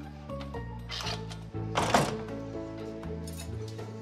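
Background drama music with held notes, and a wooden door pushed shut with a sharp thud about two seconds in.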